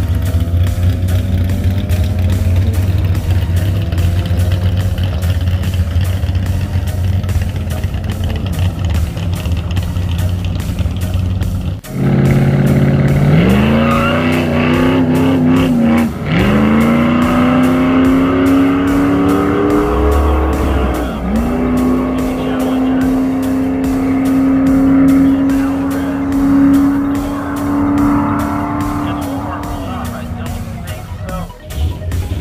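Drag cars' engines running near the start line of a drag strip. For the first part the engines rumble steadily. After a break about midway, an engine revs and accelerates hard, its note climbing, falling back twice at gear shifts, then holding high as the car runs away down the strip.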